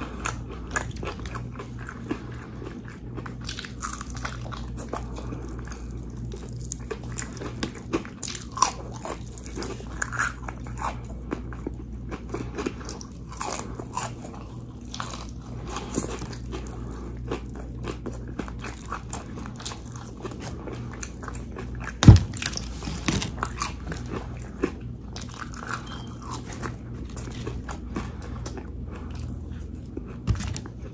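Close-up chewing and crunching of Popeyes fried chicken and fries: many short, crisp bites and chews, over a steady low hum. One sharp knock, the loudest sound, comes about two-thirds of the way through.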